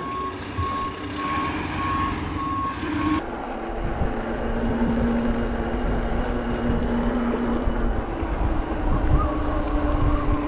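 Backup alarm of construction equipment at a roadside work site, beeping repeatedly at one steady pitch over wind and road noise. About three seconds in it cuts off suddenly, giving way to wind on the microphone and a steady low hum as the e-bike rides on.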